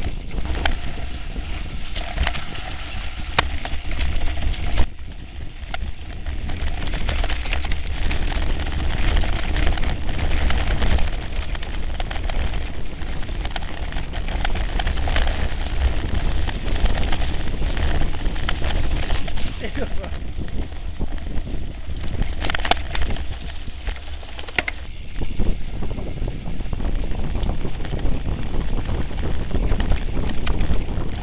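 Wind buffeting the microphone over the rattle and tyre noise of a mountain bike riding a rough dirt trail, with a few sharp knocks from the bike over bumps.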